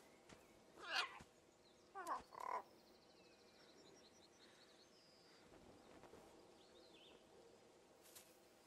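Near silence broken by three short croaking animal calls from a film soundtrack: one about a second in, two more just after two seconds.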